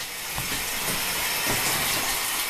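Shower spray running: a steady hiss of falling water that grows louder over the first second or so. Two soft low knocks sound in it, one about half a second in and one about a second and a half in.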